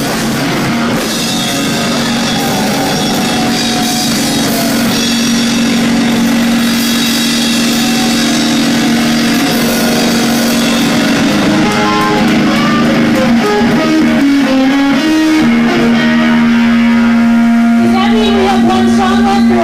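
Live rock band playing, with electric guitar over a drum kit and long held notes.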